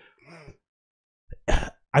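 A man briefly clearing his throat at a close microphone, about one and a half seconds in, after a faint low hum of the voice near the start.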